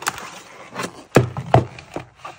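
Stiff plastic blister pack being turned over and set down on a wooden tabletop: a handful of knocks and plastic crackles, the loudest a little past halfway.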